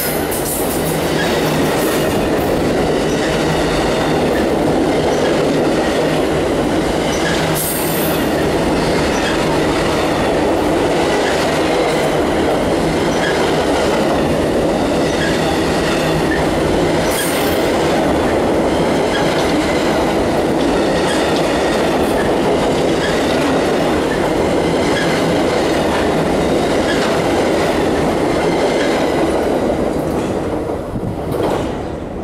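Freight train of enclosed autorack cars rolling past close by: a steady wheel-on-rail rumble with regular clicking of wheels over rail joints, and a brief high squeal about 8 seconds in and again about 17 seconds in. The end of the train passes at the very end and the noise drops.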